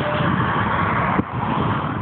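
A car passing close by at speed on an open road, a loud rush of engine and tyre noise that drops away suddenly about a second in as it goes past.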